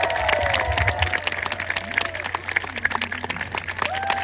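Audience applauding, dense and irregular, with voices calling out over it in the first second.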